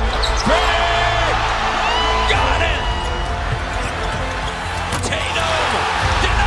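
Basketball game sound over a music bed with a heavy, steady bass: a ball bouncing on a hardwood court and several short, high sneaker squeaks, mostly in the first half and again near the end.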